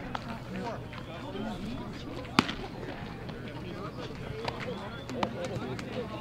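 Players' voices chattering at a baseball field, with several sharp knocks of a baseball being thrown and caught in leather gloves; the loudest crack comes about two and a half seconds in, with fainter ones near the start and in the last second and a half.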